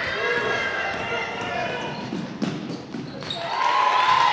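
Basketball bouncing on a hardwood gym floor during play, a few sharp bounces, under voices of players and spectators calling out.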